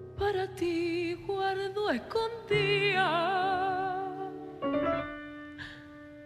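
A woman singing a copla phrase with wide vibrato over live piano accompaniment: a swooping fall in pitch about two seconds in, then a long held note with vibrato, after which the piano sustains alone near the end.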